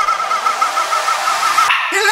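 Breakdown of an electronic dance track: a single high, sustained tone with a fast, even wobble, with no bass or drums under it. The sound thins out near the end.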